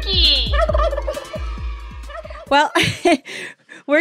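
A turkey gobble in the first half-second, over the closing bars of a children's song with a steady beat. The music stops about two and a half seconds in, followed by a few brief voice-like sounds.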